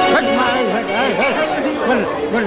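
Speech: a young voice amplified through a stage microphone and loudspeakers, with chatter around it.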